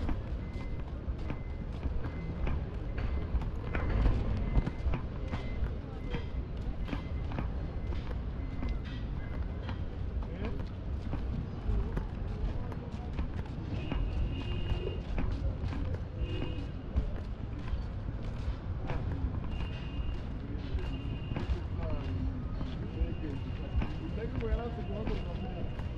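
Busy city street sounds: a steady rumble of traffic with voices of people around and many short knocks and clicks. Music plays along with it, a high held note entering about halfway through.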